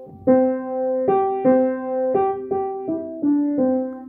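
Piano playing a perfect fifth as an ear-training dictation example. Its two notes are struck in turn several times, then a few notes step down back to the lower one near the end.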